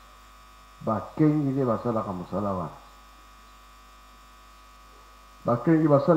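A man's voice speaks a short phrase about a second in and starts again near the end. A steady low electrical hum fills the pauses between.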